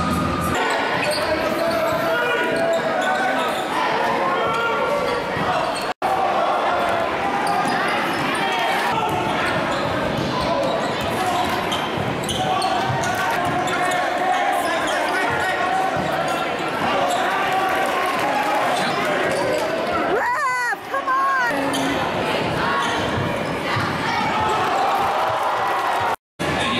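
Basketball game sound in a gym: crowd voices and chatter with a ball dribbling on the hardwood floor, and a few short rising squeaks about twenty seconds in.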